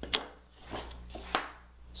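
A few light knocks of wooden pieces handled against each other: spare plywood drill press table inserts clacking, with a strong knock just after the start and another about a second and a half in.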